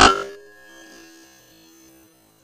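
A single loud, sudden rifle shot, followed by a ringing tail that fades over about two seconds.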